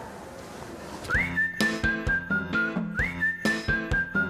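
Segment jingle: a whistled tune over music with a beat, starting about a second in. Each phrase slides up into a high held note and then steps down through shorter notes, and the phrase repeats about two seconds later.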